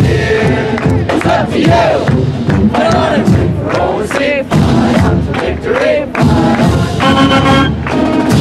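Marching band members and crowd shouting a chant in short, pitched yells over scattered percussive hits. About seven seconds in, the brass comes in with a held chord.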